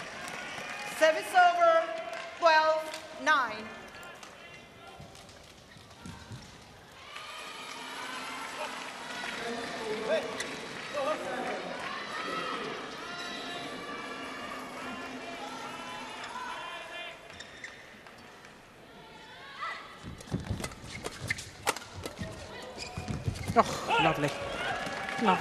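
Loud shouts near the start, then a spread of overlapping voices in a badminton arena. About twenty seconds in a fast rally starts, with quick racket strikes on the shuttlecock and shoe squeaks and footfalls on the court.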